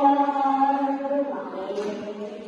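Singing: a long note is held steady, then eases off about two-thirds of the way through before the next note begins.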